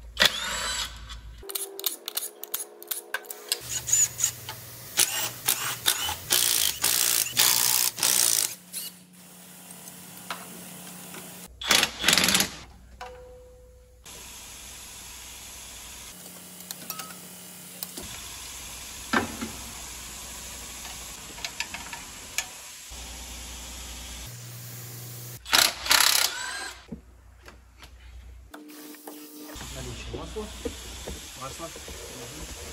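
Cordless impact driver running in short bursts as bolts are taken off a truck engine, with clinks and knocks of tools and parts between the bursts. The background changes abruptly several times where short clips are joined.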